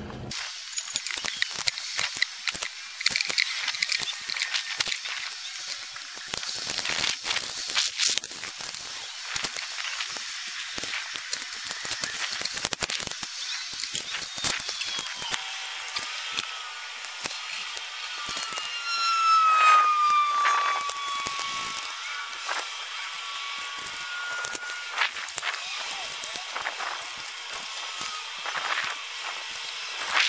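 Hand tools working on bare metal on the engine block and oil pan: a steady scraping hiss broken by many sharp clicks and taps, with a brief falling squeal about twenty seconds in.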